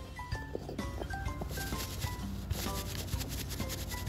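A paper cutout makeup brush rubbed quickly back and forth over a paper cutout powder compact: rapid paper-on-paper rubbing strokes starting about a second and a half in, over light background music.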